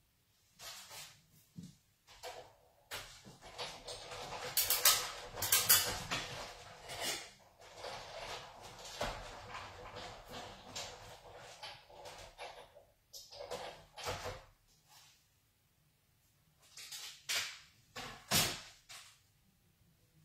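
Big Shot die-cutting machine being hand-cranked to cut a thick piece of cardstock: a long run of creaks and clicks, a pause, then a shorter run near the end.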